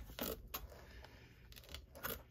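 Scissors cutting through plastic shrink-wrap, quiet, with a short snip just after the start and another near the end.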